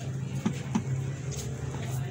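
A steady low motor hum, with two light knocks about half a second in as a small wooden block is set between the centres of a metal wood lathe.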